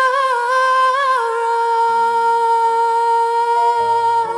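A woman's solo singing voice through a microphone: an ornamented, wavering note in the first second settles into one long held high note. Quiet low accompaniment chords come in under it about halfway through.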